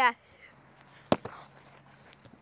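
A single sharp knock about a second in, with a faint steady low hum underneath.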